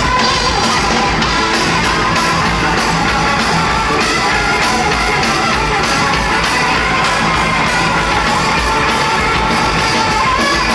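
A rock power trio playing live and loud: electric guitar, bass and drum kit, heard through the room from the audience.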